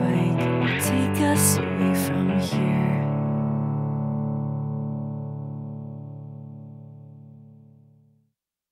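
Rock band with guitars playing the song's closing bars, which stop about two and a half seconds in on a final guitar chord. The chord rings on and slowly fades out.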